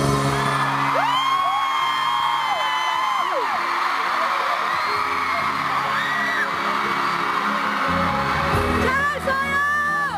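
Live pop ballad accompaniment holding steady chords between sung lines, with audience members screaming in high, drawn-out cries about a second in and again near the end.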